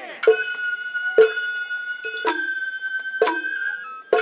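Sawara-bayashi festival music: a shinobue bamboo flute holds a long high note, with a slight step in pitch near the end. Sharp strikes on a kotsuzumi hand drum fall about once a second.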